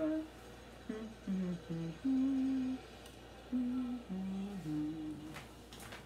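A woman humming a tune to herself: a string of held notes that step up and down in pitch, with short breaks between them, trailing off near the end.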